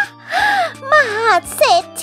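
A voice speaking Thai in an exclaiming tone over steady background music.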